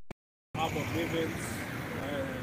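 A single click, then a brief dead-silent gap. About half a second in, steady outdoor street noise comes up with faint background voices in it.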